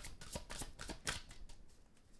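A deck of tarot cards being shuffled by hand: a quick run of soft card clicks that thins out and fades after about a second.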